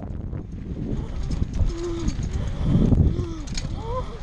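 Mountain bike rolling fast over a dirt trail: a steady rumble of tyres and wind with scattered rattles and knocks. About halfway and again near the end, a rider lets out two short wordless hoots, each rising and falling in pitch.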